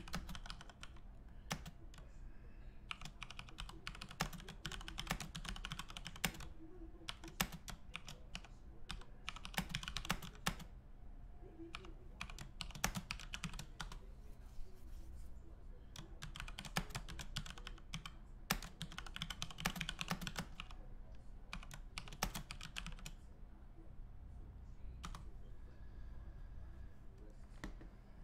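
Typing on a computer keyboard: bursts of rapid keystrokes, with pauses and single key presses between them, over a low steady hum.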